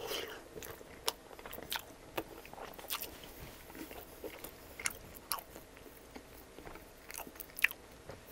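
A person bites into a folded slice of arugula-topped frozen pizza, then chews it close to the microphone. Soft crust crackles and wet mouth clicks come at irregular intervals, with the sharpest click near the end.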